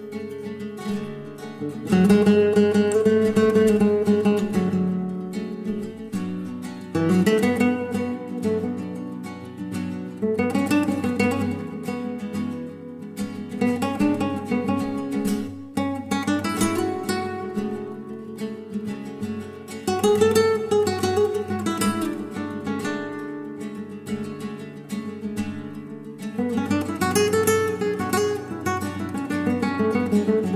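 Spanish acoustic guitar music: strummed and quickly plucked chords in phrases that swell and fall back every few seconds.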